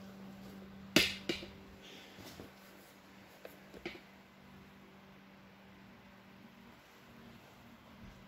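Quiet room tone with a faint steady hum, broken by one sharp click about a second in and a few small ticks a little before halfway.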